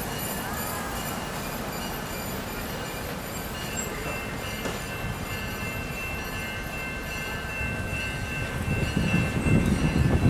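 Slow-moving freight train rolling closer, its wheels rumbling on the rails, with a thin steady wheel squeal that starts a few seconds in. The rumble grows louder near the end as the cars draw near.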